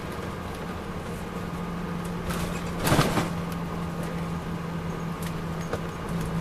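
Inside a moving MCI D4000 coach: its Detroit Diesel Series 60 engine runs with a steady low hum under road noise. A brief, loud clatter comes about halfway through.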